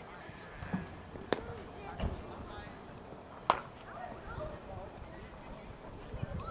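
Faint distant voices across an open field, broken by two sharp knocks, one about a second in and a louder one with a short ring midway through, plus a dull thud between them.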